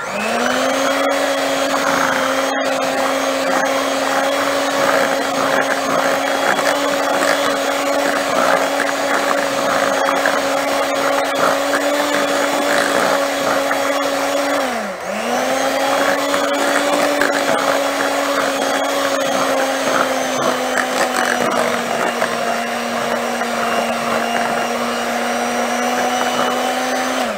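Electric hand mixer running steadily, its beaters whirring through thick cake batter in a glass bowl. About halfway through, the motor note sags briefly, then picks back up.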